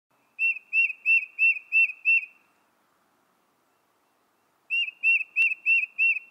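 Two runs of short, identical high whistled chirps, about three a second, with a gap of silence between them and a sharp click during the second run.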